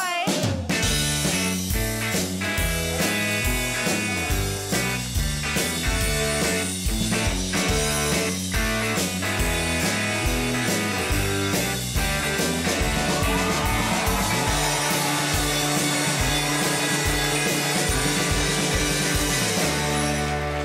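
Rock band playing an instrumental: electric guitar and drums over a bass line that steps from note to note.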